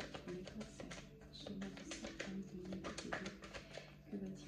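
A deck of oracle cards shuffled by hand: a quick, uneven run of soft card clicks and slaps, over soft background music with held notes.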